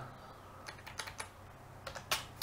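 Faint computer-keyboard typing: a few scattered keystrokes.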